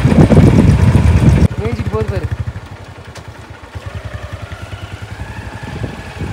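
Motorcycle engine idling with a steady low pulse, loud at first, then dropping suddenly to a quieter idle about a second and a half in. A voice is heard briefly just after the drop.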